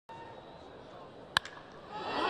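Single sharp crack of a wooden baseball bat squarely hitting a pitch, a little over a second in, over low ballpark crowd murmur: the contact of a home-run swing.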